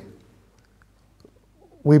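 A man's preaching voice trails off. A pause of near silence follows, with a few faint small sounds, before his voice resumes near the end.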